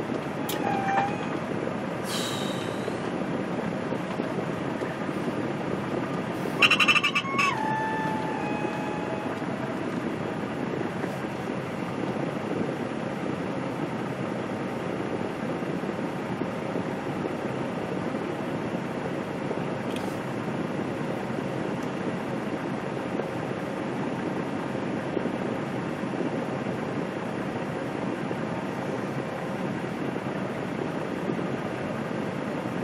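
Semi truck's diesel engine idling in the cab while stopped at a light, a steady rumble. There is a short hiss of air about two seconds in, and a brief squeal with rattling around seven seconds.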